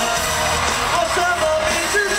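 A pop song performed live by a band, with a sung melody over it, played loud and without a break through an arena sound system and recorded from within the audience.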